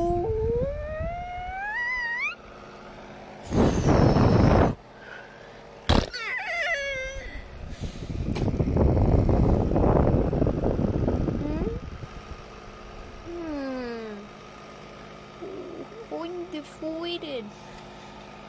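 A child's voice making wordless character noises: a long rising wail at the start, then short falling whoops and squeaks later on. Loud bursts of rushing noise cut in at about four seconds and again for a few seconds from about eight seconds in, with a sharp click at six seconds.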